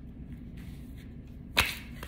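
Quiet room tone, then a single sharp snap about one and a half seconds in.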